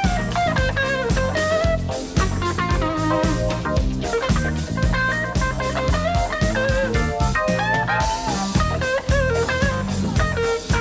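Live jazz-funk band: a hollow-body electric guitar solo of single-note melodic runs over a steady drum kit groove and bass line.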